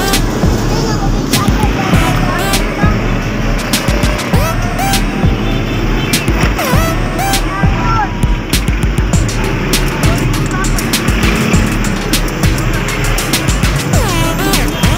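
Busy roadside noise: passing traffic, voices and music mixed together, with frequent short clicks and knocks.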